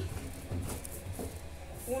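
Hands kneading a soft ball of flour-and-water pastry dough on a floured stainless-steel counter: faint soft pushing and pressing sounds over a steady low hum.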